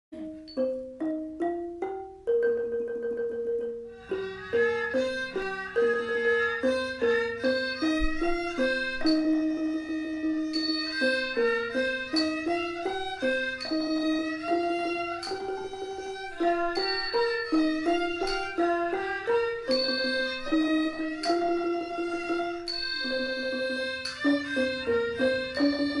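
Thai classical ensemble playing: a ranat ek xylophone with its struck, ringing notes and a Thai bowed fiddle (so) carrying the melody. It opens with a few sparse xylophone strokes and a held note, and about four seconds in the full ensemble comes in with busy, running mallet notes under the fiddle line.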